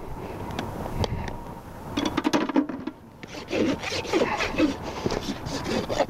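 Farrier's hoof rasp filing the hoof wall of a freshly shod hoof, with a run of quick scraping strokes in the second half, as the wall over the shoe is rounded off to finish the shoeing.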